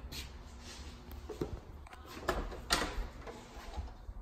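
Wooden closet door being opened: a few sharp knocks and clicks from the knob, latch and door. The loudest two come close together a little past the middle.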